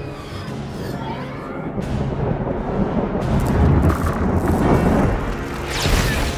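Orchestral film score with deep booming percussion, layered with a rumbling effects bed. Crackling electric lightning effects rise near the end.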